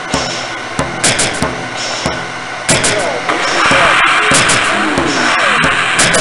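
Experimental noise music: a sound collage of repeated sharp hits over steady droning tones, with a loud hiss entering about three seconds in and warbling, gliding tones layered in after it.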